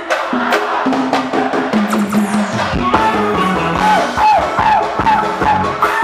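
Live band music from a stage show: melodic lines over bass notes and drums. The deep bass and kick drum drop out at the start and come back in about three seconds in.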